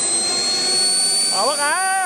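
Small model jet turbine engine in an RC BAE Hawk running and spooling up: a loud high whine that slowly rises in pitch over a steady rush of air. A voice cuts in briefly near the end.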